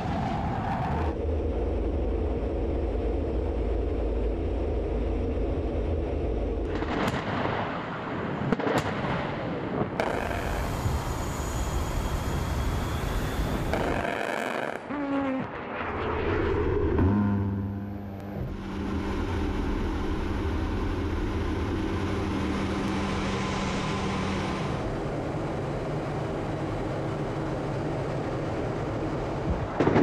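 F/A-18 Hornet jet engines running loud in flight, heard in several short clips that change abruptly. A couple of sharp cracks come about a quarter of the way in, and an explosion hits right at the end.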